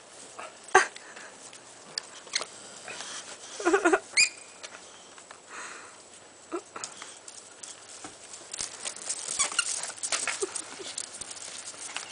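Miniature dachshund tugging at a plush toy, with scattered rustles and clicks and a couple of short dog vocal sounds about four seconds in.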